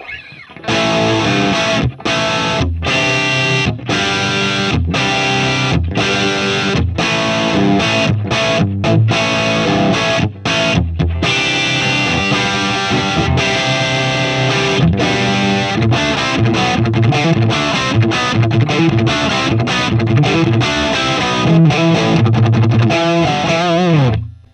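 Electric guitar (Gibson Les Paul) played through a Marshall JCM800 amplifier on its own, with the Ibanez TS9 Tube Screamer switched off: the amp's bare tone as a reference. The riff's chords are broken by short stops in the first half, then the playing runs on more continuously.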